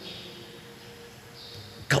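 A pause in a man's speech: a low, steady background hiss and faint hum, with his voice resuming at the very end.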